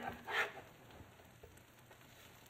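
Sausage patties sizzling faintly on an electric griddle, with a short vocal sound about half a second in and a couple of light ticks from the metal spatula.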